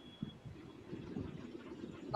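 Faint room and microphone background noise with soft, irregular low thumps, and a thin high tone that stops about a third of a second in.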